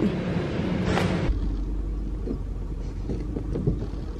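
Shop background hum with a short rustle about a second in, then an abrupt change to a low, steady outdoor rumble with a few faint knocks.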